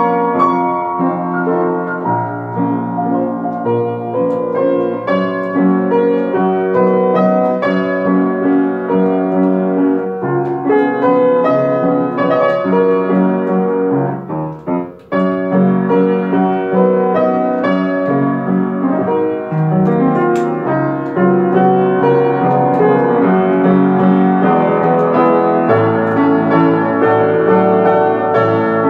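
Upright acoustic piano playing a waltz, with melody over bass notes and chords. The playing breaks off briefly about halfway through, then carries on.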